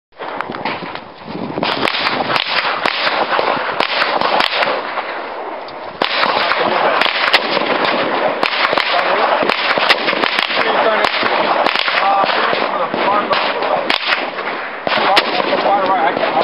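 Gunfire at a shooting range: many sharp shots at irregular intervals from several guns, over a steady hiss of background noise.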